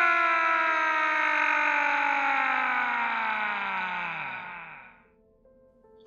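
A descending cinematic sound effect: a rich tone with many overtones sliding slowly and steadily down in pitch. It fades out about five seconds in.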